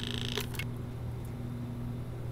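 Steady low hum during gentle pipetting of a cell suspension in a plastic centrifuge bottle on ice, with two faint light clicks about half a second in.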